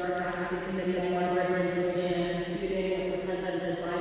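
A steady, unchanging pitched drone with many overtones, like a buzz or hum, covers the audio. Brief hissing s-sounds of speech show faintly through it.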